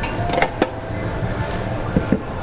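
Steady low hum of kitchen background noise, with a few light metallic clinks in the first second as a spoon knocks against a stainless steel mixing bowl.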